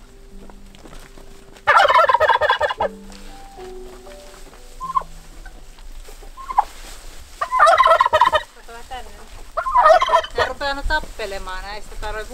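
Domestic tom turkey gobbling three times, each a loud, rapid warbling call of about a second, spaced several seconds apart.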